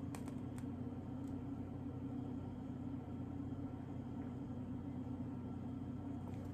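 Steady low background hum, like an appliance or fan running, with a few faint clicks in the first second or so.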